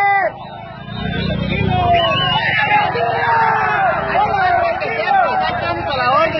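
A crowd of people talking and shouting over one another, with a low rumble about a second in.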